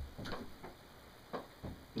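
A few faint, scattered clicks and taps in a pause between words, against low room tone.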